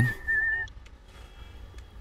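Mobile phone ringing: a high, slightly warbling tone that stops about half a second in as the call is taken.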